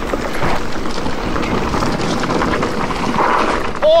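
Mountain bike riding fast over a bumpy dirt trail: a steady rush of wind on the microphone mixed with tyre noise and small clicks and rattles from the bike over bumps. Right at the end the rider gives a short whoop.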